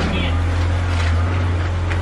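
A car's engine running at low speed as the car is driven slowly in: a steady low hum with a rushing noise over it.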